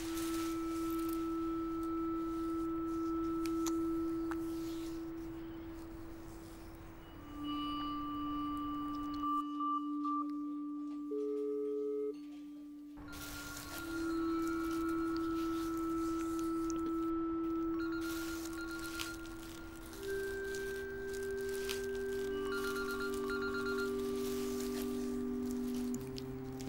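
Film score of sustained, pure electronic tones that hold for several seconds each and shift slowly between a few low pitches, with fainter high tones above and a few short pulsing beeps. The background hiss drops out for a few seconds in the middle, leaving only the tones.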